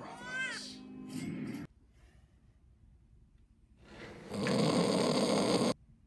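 Snoring sound effect: one long noisy snore that builds up and then cuts off suddenly. Before it, a short rising-and-falling pitched call over a low hum stops abruptly.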